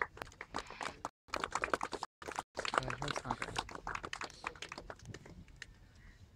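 Scattered clapping from a small crowd as a prize is announced, a dense patter of claps for about three and a half seconds that then thins out to a few claps.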